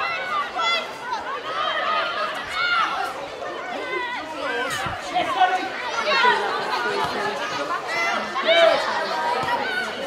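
Players and touchline staff calling out to each other across the pitch during play, several voices overlapping in shouts and short calls.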